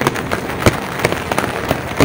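Heavy rain falling, a steady hiss with many sharp, irregular taps of drops striking the umbrella held just above the microphone.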